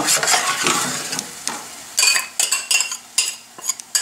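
Metal spoon stirring tomato puree in a stainless steel pan, with sizzling from the hot oil. About halfway through, the stirring gives way to a run of sharp clinks and scrapes as the spoon strikes the pan and the puree bowl.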